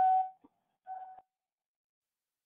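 Two short electronic beeps from a telephone conference line, the second fainter, heard through the narrow sound of a phone connection.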